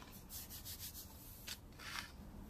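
Hands rubbing and pressing into dry scouring powder in a metal bowl: a quick run of soft, gritty rubs in the first second, a sharp scrape about a second and a half in, and a louder rub near the end.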